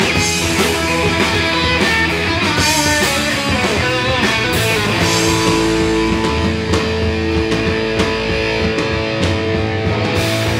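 Hardcore punk band playing live, an instrumental stretch: distorted electric guitars over drums. From about five seconds in, the guitars hold long sustained notes.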